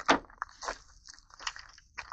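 Quiet handling and movement noise: a few short, irregular scuffs and rustles as a person shifts about and handles an AR pistol. No shot is fired.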